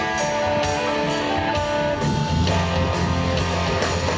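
Live rock band playing an instrumental passage: electric guitars, bass guitar and drum kit, with a steady beat of about two drum hits a second. The bass comes in heavier about halfway through.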